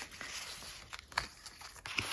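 Paper banknotes rustling and crinkling softly as they are handled and sorted, with one light tap about a second in.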